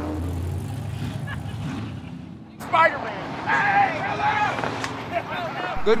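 A car engine rumbling at low revs as it drives off slowly, fading out about two seconds in. After a sudden cut comes loud movie dialogue.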